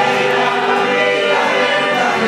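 A small group of people singing a hymn together in unison from song sheets, with held notes flowing from one to the next.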